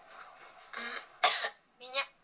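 A woman clearing her throat and coughing: a short throaty sound, then one sharp cough about a second and a quarter in, and a brief voiced sound near the end.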